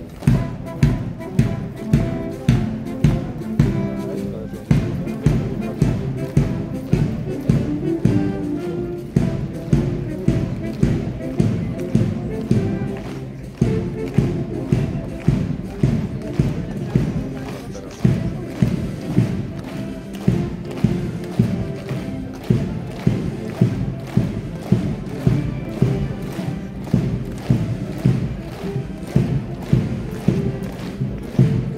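Guards military marching band playing a march: brass over a steady, even bass drum beat.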